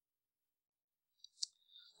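Near silence, broken by one faint short click about one and a half seconds in.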